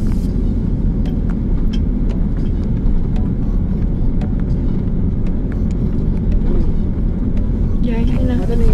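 Steady low rumble of a car's engine and tyres on the road, heard from inside the cabin while driving, with a few faint light clicks.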